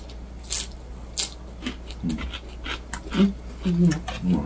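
A man eating with his mouth full: two short smacking chewing sounds in the first second or so, then several short low closed-mouth "mm" hums in the second half.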